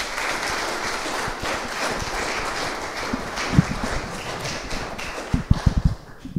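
Congregation applauding: steady clapping throughout, with a few low thumps near the end.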